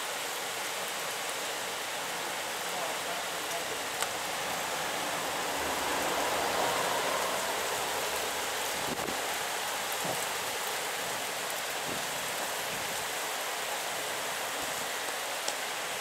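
Heavy rain pouring steadily onto trees and rooftops in a thunderstorm, a dense even hiss with a few faint ticks. In the middle a low rumble swells up and fades away over a few seconds.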